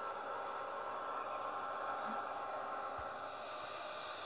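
Steady faint hiss and hum with a few faint steady tones underneath, and no distinct event.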